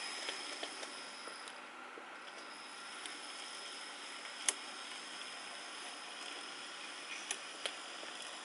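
Hornby TT-gauge A4 model locomotive running under DCC control: a faint, steady running whir with a thin high whine from its mechanism, smooth and even. A few sharp clicks break in, one about halfway through and two near the end.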